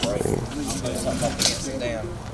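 Men talking among themselves, with a few short sharp clicks and rustles of equipment being handled.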